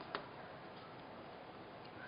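A single light click just after the start, from hands handling the small craft jar and foam pieces, then faint room noise.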